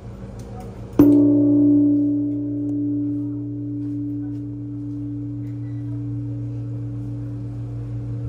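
Large bronze Buddhist temple bell (bonshō) struck once by a rope-swung wooden log about a second in. It rings on as a deep hum of several steady tones that fades only slowly.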